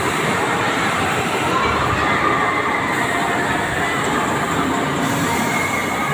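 Rotating jet-car amusement ride in motion: its machinery running with a steady rumble and rushing noise, and faint drawn-out high squeals over it.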